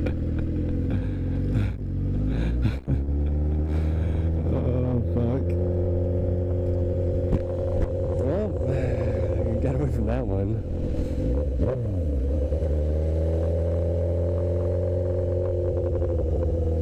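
Honda CBR1000RR's inline-four engine running at low revs as the bike rolls slowly. Its pitch mostly holds steady, with a few short rises and falls in the middle stretch.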